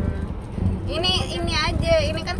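Steady low rumble of road and engine noise inside a moving minivan's cabin, with a high-pitched voice speaking over it in the second half.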